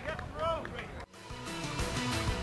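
A short call from a voice, with a rising-then-falling pitch, over faint pitch-side ambience; just after a second in it cuts off abruptly and the TV ident's music starts, building to a steady beat.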